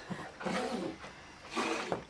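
Soft, breathy laughter and voice sounds, trailing off, with a second short burst about one and a half seconds in.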